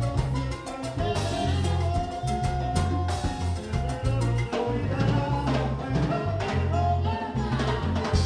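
Live salsa band playing, with a pulsing bass line and drums under keyboard, brass and a male lead singer. A long held note rings out about two seconds in.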